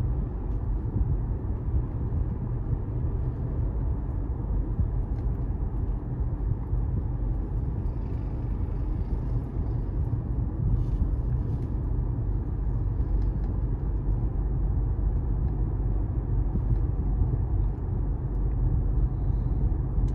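Steady low rumble of a car being driven, its engine and tyres on the road running evenly with no change in speed.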